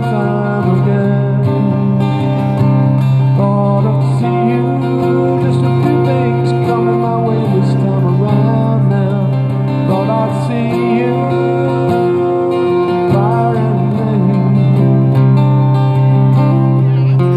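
Amplified acoustic guitar strummed without pause through an instrumental passage of a song, with a steady low bass note running under the chords.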